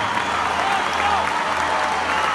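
Concert audience applauding, a steady clapping that fills the pause between the singer's lines.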